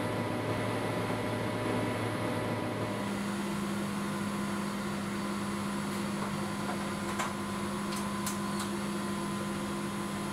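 Steady hum of building plant machinery. About three seconds in, its low tone changes to a different, higher one. A few light clicks follow between about seven and eight and a half seconds as a steel electrical cabinet door's latch is worked and the door opened.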